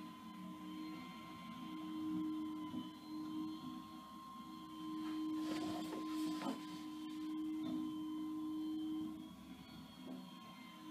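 Rear-loading garbage truck's hydraulic packer running with a steady whine, with a brief clatter of trash going into the hopper about five and a half seconds in. The whine stops shortly before the end.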